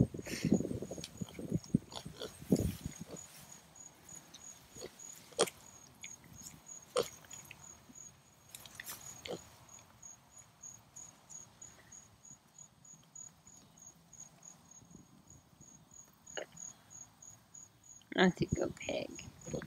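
An insect chirping steadily in a thin, high, evenly pulsed call, about two chirps a second. Scattered rustles and clicks of handling in the grass and fence come and go, busiest in the first three seconds.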